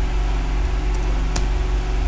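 Steady electrical mains hum with a buzzy stack of overtones and background hiss, with a few faint keyboard clicks over it, the clearest about one and a half seconds in.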